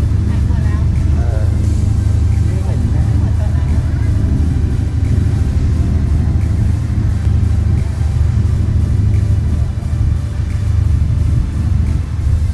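Passenger ferry's engine running under way with a loud, steady low drone, water rushing along the hull beneath it, and faint passenger voices in the first few seconds.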